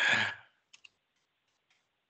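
A spoken word trails off, then two faint, sharp clicks come close together just under a second in, followed by near silence.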